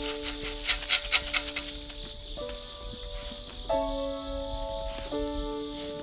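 Background music of slow held chords that change about every second and a half, over a steady high drone of insects such as crickets. In the first two seconds, dry corn poured from a small can rattles and patters onto the ground.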